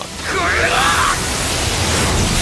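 Anime film trailer sound effects: a loud, sustained rushing noise swells up, with a brief shouted cry that rises and falls about half a second in.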